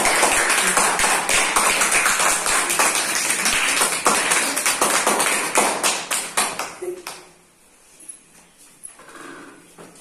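A class of schoolchildren clapping together, a dense round of applause that stops about seven seconds in.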